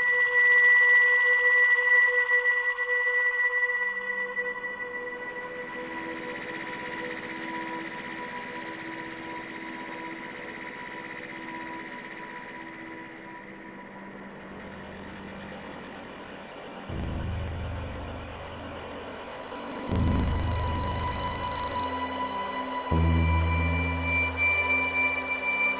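Ambient electronic music played on software synthesizers, Cherry Audio's Elka-X and PS-3300 emulations. Long held high pad tones, with a low drone coming in after about four seconds and deep bass notes swelling in near the end.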